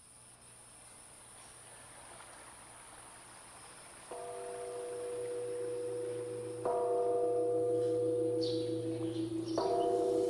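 A struck metal bell, like a temple gong or singing bowl, rings three times about two and a half seconds apart. Each strike sustains with steady tones and grows louder than the last, over a soft rushing hiss that swells in from the start.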